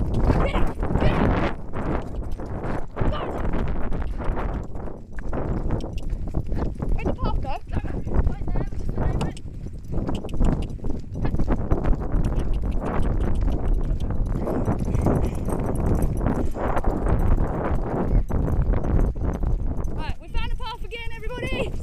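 Hoofbeats of a ridden pony on grass, a continual run of dull thuds as it moves along with other horses.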